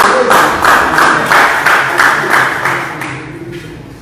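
A group of people clapping in time, about three claps a second, dying away about three seconds in.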